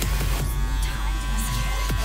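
Electric hair clipper buzzing steadily as it cuts short hair at the nape, under electronic background music.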